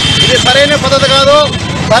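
A man speaking Telugu, with a thin, faint, steady high whine under his voice until near the end.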